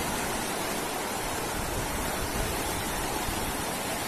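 Fast-flowing floodwater rushing down a street: a steady, unbroken roar of churning water.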